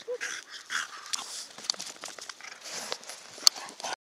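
French bulldog puffing and snuffling close to the microphone, amid scattered crunching clicks on icy gravel, with one sharp click about three and a half seconds in as the loudest sound.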